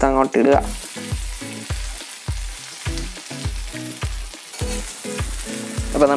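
Chicken pieces sizzling as they fry in a hot pan, the hiss setting in about half a second in and holding steady, while a metal spatula stirs and turns them.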